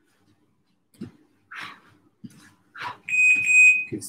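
A high electronic beep of an interval timer, held for about a second near the end, marking the end of a 30-second exercise. Before it, a few soft thumps and breaths from someone doing fast mountain climbers on a gym mat.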